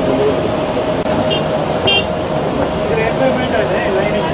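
Ambient sound of a busy shop: indistinct voices over a steady hum, with two short high-pitched toots about a second and a half and two seconds in.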